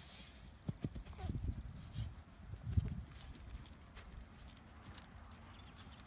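Footsteps of cleats striking artificial turf during quick agility footwork: a run of irregular thuds, busiest in the first three seconds and sparser after.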